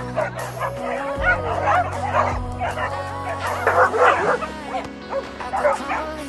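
A pack of dogs yipping and whining excitedly in many short, rapid high calls, over background music.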